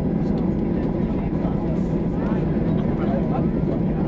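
Steady low rumble of a Boeing 737's cabin as the jet taxis after landing, with passengers talking faintly underneath.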